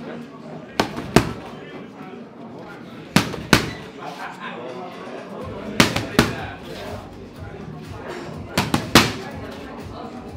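Boxing gloves smacking into leather focus mitts in quick combinations. Pairs of sharp strikes land about a third of a second apart every two to three seconds, and a burst of three comes near the end.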